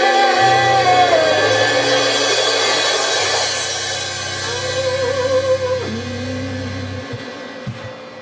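Live rock band with electric guitars, bass and drum kit holding out what sounds like a song's final chord. Guitar and bass ring with cymbal wash and slowly fade, a guitar line slides down in pitch near the start, and a low bass note stops about seven seconds in.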